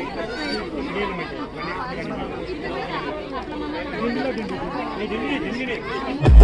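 Many people talking at once: overlapping voices of a chattering crowd.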